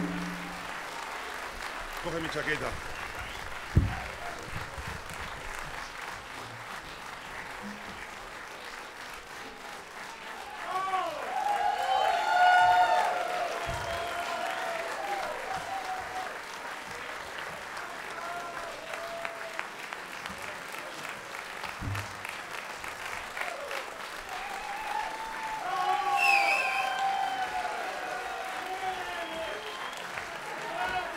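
Concert audience applauding, with raised voices calling out over the clapping twice, about eleven seconds in and again near the end.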